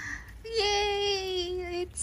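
A woman's voice making one long, drawn-out exclamation, an awed "ooh", its pitch falling slightly; it starts about half a second in.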